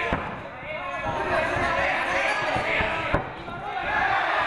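Voices calling out from around an MMA ring, with two sharp thuds, one right at the start and a louder one about three seconds in, from the fighters' strikes or footwork on the ring canvas.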